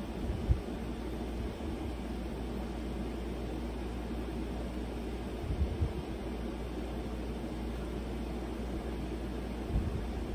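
Steady room background noise, a low hum under an even hiss, with a few brief soft low thumps about half a second in, near the middle and near the end.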